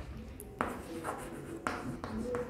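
Chalk writing on a blackboard: faint scratching, with two sharper strokes, about half a second in and near the end.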